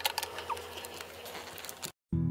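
Light clicks and taps of small plastic toy figurines being handled on a shelf, over a faint steady hum. The sound cuts out abruptly near the end.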